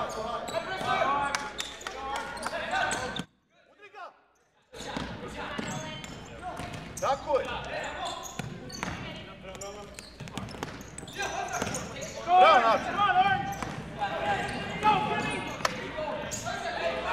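Futsal game in a gym: players and spectators shouting, with sharp knocks of the ball being kicked and bouncing on the hardwood floor, all echoing in the hall. About three seconds in, the sound cuts out to near silence for about a second and a half, and there is a loud shout about twelve seconds in.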